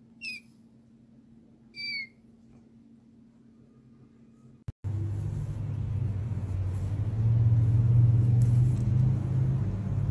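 A kitten mewing twice: two short, high-pitched mews about a second and a half apart. After a sudden cut about five seconds in, a louder steady low rumble takes over.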